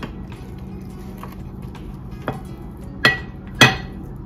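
Dishware clinking as a serving of casserole is lifted from a ceramic baking dish onto a china plate: a few faint ticks, then two sharp clinks with a short ring about half a second apart near the end, over a faint steady hum.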